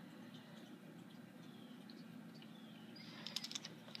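Near silence: faint room tone, with a few faint small clicks near the end.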